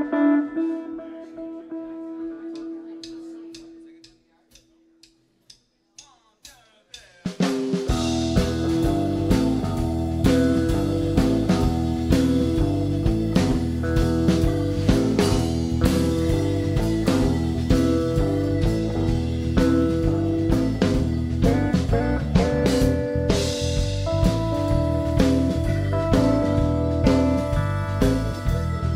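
A held electric guitar chord fades out, a few evenly spaced stick clicks count the band in, and about seven seconds in a blues band comes in together: electric guitar, bass guitar, drum kit and keyboard playing a steady instrumental groove.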